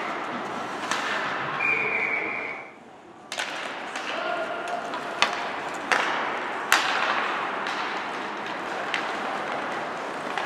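Ice hockey rink during play: skates scraping on the ice and sharp cracks of sticks and puck, the loudest three about five, six and seven seconds in, echoing in the hall, with spectators shouting. The sound dips out briefly about three seconds in.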